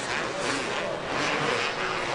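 Supercross race motorcycles running on the track, a steady mass of engine noise.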